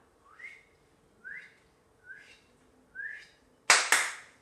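Four short rising whistled notes, about a second apart, followed near the end by a sharp double slap.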